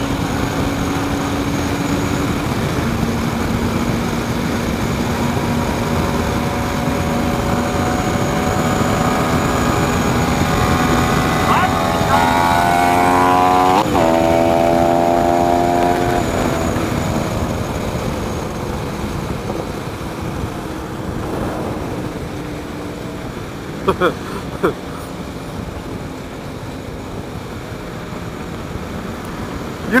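Motorcycle engine under full-throttle acceleration over heavy wind rush: its note climbs for several seconds, drops suddenly at an upshift about 14 seconds in, climbs briefly again, then eases off and fades into the wind noise.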